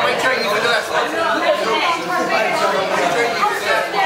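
Many people chatting at once in a large hall: overlapping crowd babble, with no single voice standing out.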